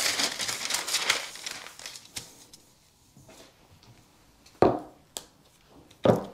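Large sheets of paper pattern rustling as they are lifted and laid flat, fading after about a second and a half. Later a single knock and a light click as a metal pattern weight is set down on the paper.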